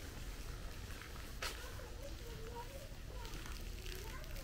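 Outdoor ambience of faint, indistinct voices at a distance over a steady low rumble, with a single sharp click about a second and a half in.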